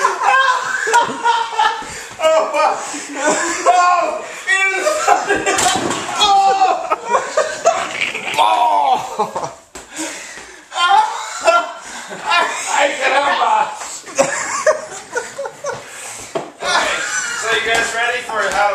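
Several men talking over one another and laughing, in lively group chatter with no single clear voice.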